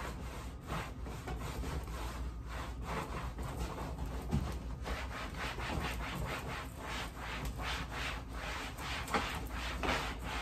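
A cloth rubbed hard back and forth over the plastic side of a trash can in quick wiping strokes, about three a second.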